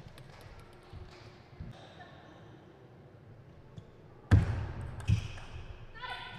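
Table tennis ball giving a few faint, sparse clicks, then a sudden loud knock about four seconds in and a second sharp knock about a second later.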